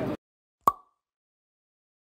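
Background hall noise cuts off abruptly just after the start. About two-thirds of a second in comes a single short electronic pop with a brief ringing tone, a logo sound effect, which dies away within a quarter second.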